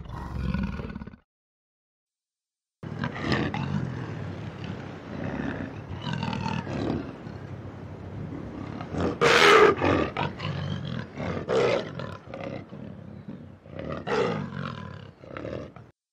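A black panther calling in a string of rough, throaty big-cat calls after a brief silence. The loudest call comes about nine and a half seconds in. The tail of a Sunda clouded leopard's call ends about a second in.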